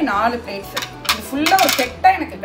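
Ceramic dinner plates clinking and clattering against each other as a stack is handled and set down on a table, with sharper clinks a little under a second in and again near the end.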